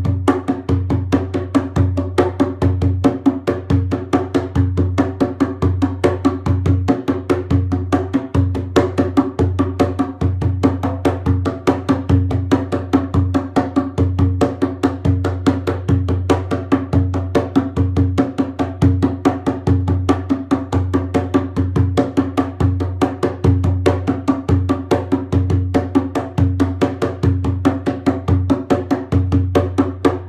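Djembe with a hide head played with bare hands: a fast, unbroken rhythm of strokes in a nine-beat cycle, with the drum's low boom sounding under the sharper hits.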